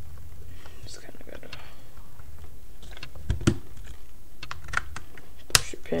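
Scattered clicks and knocks of the plastic and metal parts of a G&G Raider airsoft rifle as it is handled and fitted back together, with a duller thud about three seconds in and the sharpest click near the end.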